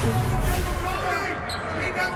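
Basketball bouncing on a hardwood court as play resumes, with a short high sneaker squeak about one and a half seconds in, over voices in the arena.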